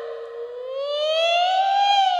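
Female Cantonese opera voice in the high falsetto of the dan role, drawing out a syllable of a stylized spoken line as one long note that rises slowly in pitch and grows louder.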